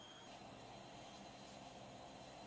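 Near silence: a faint, steady hiss from an electric fan running in the room.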